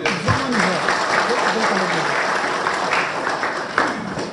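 Audience applauding, with a man's voice heard over the clapping; the applause dies away near the end.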